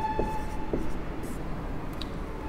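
Felt-tip marker writing on a whiteboard: faint squeaking and scratching strokes in the first second, then it stops.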